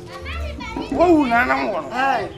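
High-pitched voices calling out excitedly, more than one at a time, with music faintly underneath.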